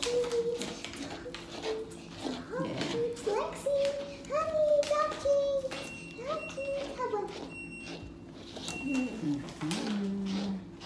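A young child's high voice making wordless, sing-song calls, with a washing machine's electronic beep sounding several times in short pieces in the second half.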